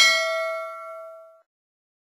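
A notification-bell 'ding' sound effect: one bright bell strike ringing on several clear tones and fading out over about a second and a half.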